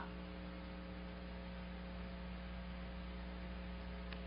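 Steady electrical mains hum with a faint hiss underneath, unchanging throughout.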